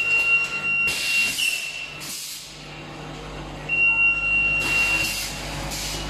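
Aseptic bag making machine working: four short bursts of compressed-air hiss from its pneumatic actuators over a steady low machine hum. A steady high tone sounds twice, for about a second and a half each time, at the start and again a little past the middle.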